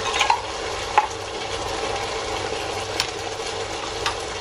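Onion, garlic and tomato frying in a pan with a steady sizzle, broken by a few light knocks.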